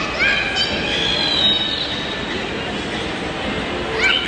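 Loud, dense noise of a busy indoor play area in a mall, with high-pitched squeals rising and falling through it.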